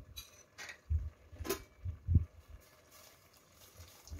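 A few soft low knocks and one sharp click in the first half: kitchen handling noise around a stainless steel stockpot on the stove.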